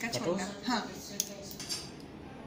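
Small metal manicure tools clicking and clinking against long acrylic nail tips, with two sharp clicks in the second half.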